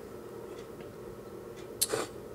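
Quiet room tone with a steady faint hum, and one short click near the end.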